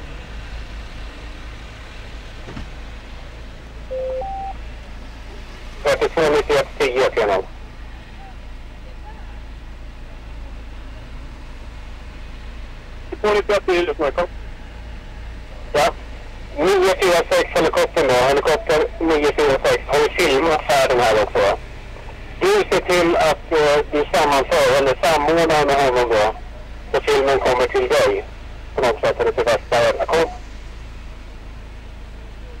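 A loud, distorted voice in repeated bursts with no clear words, its pitch wavering, starting about six seconds in and recurring through to the end. Shortly before, there is a brief two-note rising beep.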